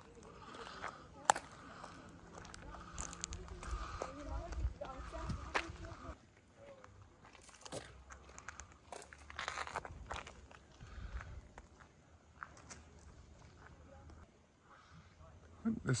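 Footsteps scuffing and crunching on concrete grit, irregular and fairly quiet. Faint voices of other people talking underneath for the first six seconds or so.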